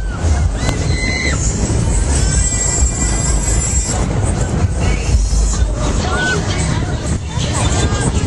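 Loud fairground ride soundtrack: music and voices over a heavy low rumble as the thrill ride swings, with crowd babble mixed in.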